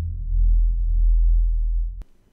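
Deep, steady bass drone of a logo-intro sound effect, a low hum with no high sounds over it, cutting off suddenly at the end.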